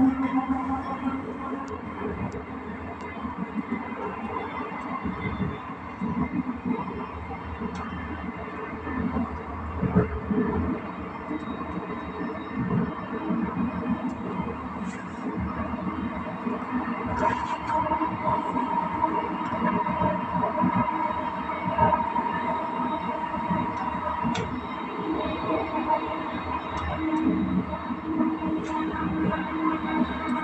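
Passenger coach train running along the track, heard from inside a coach: a continuous running rumble with scattered clicks from the wheels and rails. A high steady tone rings out for several seconds past the middle.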